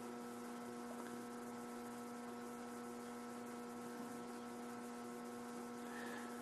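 Faint, steady electrical mains hum: one low constant tone with a ladder of higher overtones, over a soft even hiss.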